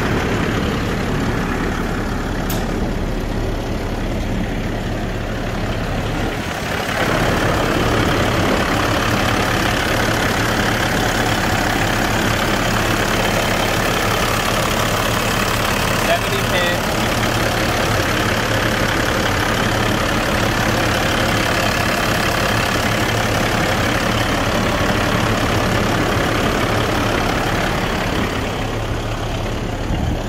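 Caterpillar C12 straight-six diesel truck engine idling steadily, getting louder and brighter from about seven seconds in. The owner judges that it runs good, with good oil pressure.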